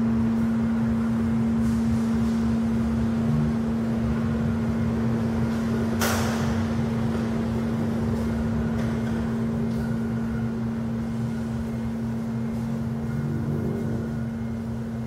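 Steady low drone with one strong, constant hum tone and a rumble beneath it, typical of a performance sound-design track. A single sharp knock with a short ring comes about six seconds in.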